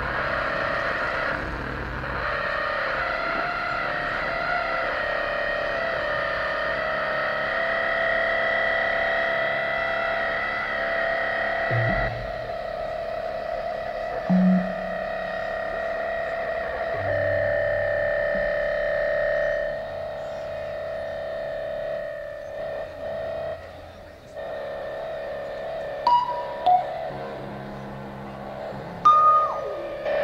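Experimental live electronic music: long held synthesizer-like drones that shift pitch every few seconds, thinning out past the middle, with a few short bright blips near the end.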